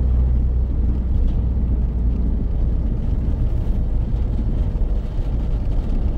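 Mercedes-Benz Sprinter van driving at road speed, heard from inside the cab: a steady low rumble of diesel engine and tyre noise.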